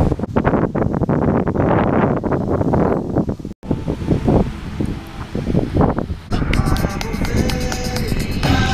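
Gusty wind noise on the camera microphone, cut off abruptly a little past three seconds in. Music starts up about six seconds in and runs on.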